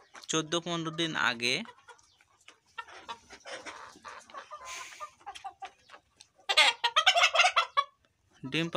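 Flock of Egyptian Fayoumi chickens clucking, with a louder burst of rapid cackling from about six and a half seconds in.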